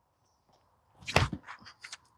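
A single sharp whoosh about a second in as a disc golf driver is thrown, followed by a few fainter quick ticks and scuffs.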